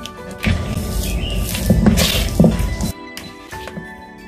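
Background music playing steadily, with a plastic fork mashing and stirring butter and grated cheese in a bowl: a noisy scraping stir from about half a second in that stops about a second before the end.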